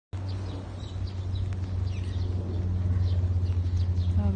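Birds chirping in short, high calls repeated every fraction of a second, over a steady low rumble.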